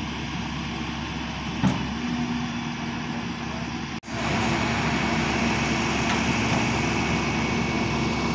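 Flatbed tow truck's diesel engine idling steadily, with a single click about one and a half seconds in. The sound breaks off for an instant about halfway, then the idle comes back louder and closer.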